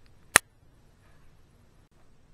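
A single sharp click about a third of a second in, over quiet room tone.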